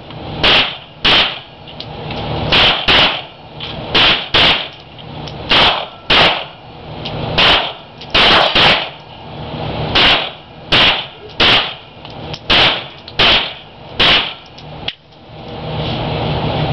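Gunshots at an indoor range: a Kel-Tec Sub 2000 9mm carbine and a handgun in the next lane, about eighteen sharp shots at an uneven pace, singles and quick pairs. Each shot has a short echo off the concrete walls.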